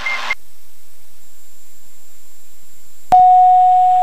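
Aircraft landing-gear warning horn: a single steady tone that starts abruptly about three seconds in, set off by a throttle at idle with the gear up. It is heard over the cockpit intercom, with a faint high electronic whine underneath.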